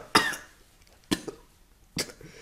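A person coughing: two short coughs about a second apart, with a smaller one just after the second and another starting near the end.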